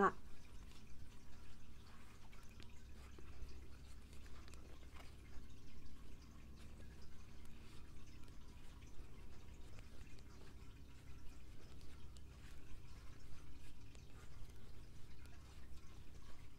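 Wooden knitting needles working fluffy yarn: faint, irregular light ticks and clicks as stitches are knitted, over a low steady hum.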